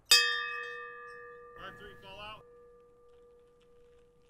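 A single struck bell-like chime sound effect with a sudden start and a long ringing tone that slowly fades. A short wavering voice-like sound comes in about one and a half seconds in.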